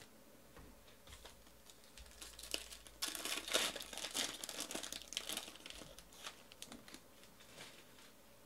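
Foil wrapper of a Panini Origins football card pack being torn open and crinkled by hand, loudest from about three seconds in for a couple of seconds, then a few light handling clicks as the cards come out.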